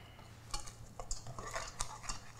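Wire whisk stirring in a stainless steel mixing bowl, metal clinking and scraping against metal in an irregular string of light clicks that starts about half a second in.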